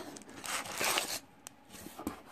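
A plastic-sleeved scrapbook paper pack rustling and scraping as it is handled and drawn out of a cardboard box. The rustle lasts about a second, followed by a single faint click.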